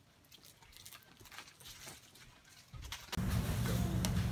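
Faint clicks and rustles in a quiet room, then, about three seconds in, a sudden loud, steady low hum with hiss: supermarket background noise.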